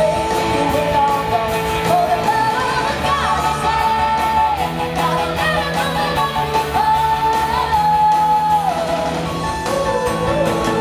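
Live rock band performing: a female lead vocal holds long, gliding high notes over electric guitars, keyboards, bass and drums.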